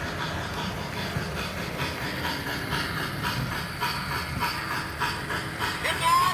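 American Flyer FlyerChief Polar Express S-gauge Berkshire steam locomotive running past, its onboard sound system giving a steady, rhythmic steam chuff with hiss, over the rumble of the train rolling on the track.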